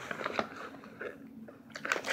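Soft chewing of a sour gummy candy close to the microphone, with a few faint wet clicks near the start.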